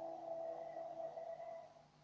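A soft synthesizer chord from the background score, a few steady tones held and then fading away near the end.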